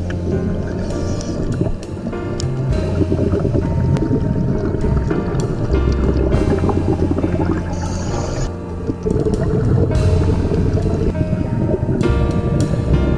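Background music with a bass line that steps between notes every second or two.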